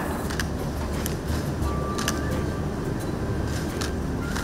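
A few camera shutter clicks at scattered moments, sharp and short, over a steady low rumble of room noise.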